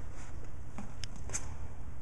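Steady low background hum with two or three faint light clicks near the middle; no loud sound.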